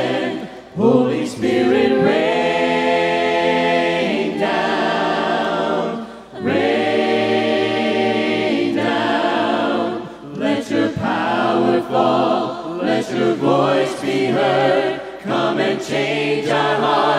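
Church congregation singing a hymn a cappella in parts, with two long held chords and short breaks between the phrases.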